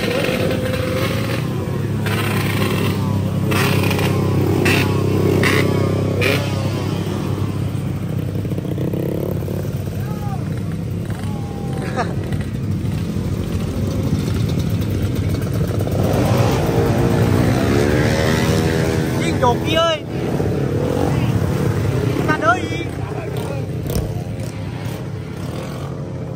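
Motorcycle engines running at a drag race start area, idling with a steady low hum, with one engine revved up and down about two-thirds of the way through. People talk nearby.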